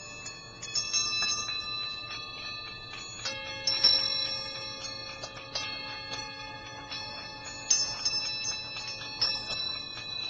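Small metal bells or chimes struck about seven times at uneven intervals, each strike giving bright high ringing tones that hang on and overlap; a lower tone joins a little after three seconds in.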